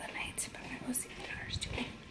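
A woman speaking softly, nearly in a whisper, close to the microphone.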